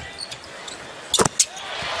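Steady arena crowd noise with two sharp knocks in quick succession a little over a second in, a basketball bouncing on the hardwood court.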